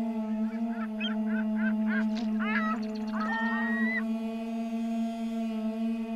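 Ambient music drone with bird calls laid over it: a quickening run of short calls, then one long held call that ends about four seconds in.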